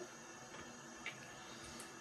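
Quiet room tone with a faint tap about a second in.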